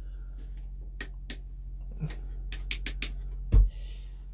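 Light switches clicking on a boat's newly rewired cabin lighting: a run of sharp clicks, several in quick succession, then a loud low thump near the end. A steady low hum runs underneath.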